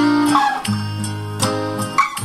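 Acoustic guitar chords played in a slow rhythm, struck several times and left to ring, with a small-room reverb effect on the guitar.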